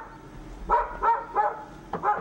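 A dog barking, a quick run of short barks about a second in.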